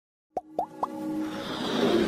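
Animated logo-intro sting: three quick plops about a quarter second apart, each rising in pitch, then a swelling whoosh of music that builds steadily.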